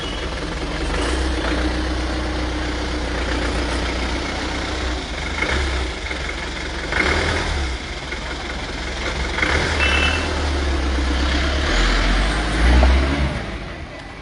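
Force Motors ambulance van's diesel engine running at idle with a steady low rumble, then revving about twelve to thirteen seconds in as the van pulls away, its sound falling off near the end. A few brief knocks come in the middle.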